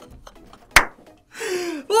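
A single hand clap a little under a second in, ending a run of excited clapping. Near the end comes a man's excited cry, falling in pitch.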